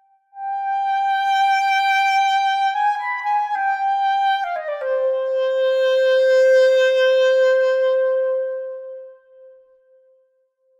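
Sampled solo clarinet (8Dio Claire Clarinet Virtuoso) playing a vibrato legato phrase. It holds a note, adds a short flourish about three seconds in, then slides down to a lower note that is held and dies away near the end.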